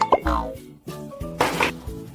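Background music with an edited-in cartoon sound effect: a quick plop whose pitch falls away just after the start, then a short whoosh about a second and a half in.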